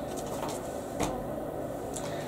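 Bagged comic books being handled and shuffled: light plastic rustles with a single sharper click about a second in.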